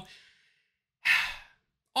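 A man's audible sigh, one breathy exhale lasting about half a second, about a second in, after the fading end of a spoken word.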